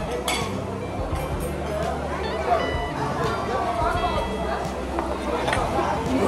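Busy restaurant dining-room ambience: background chatter and music, with a few light clinks of tableware.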